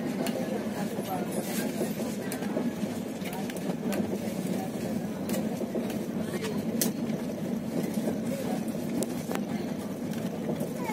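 Passenger train running, heard from inside the coach: a steady rumble of wheels on rails with scattered sharp clicks and knocks.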